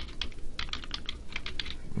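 Computer keyboard typing: a quick, irregular run of keystrokes spelling out the word "invisible".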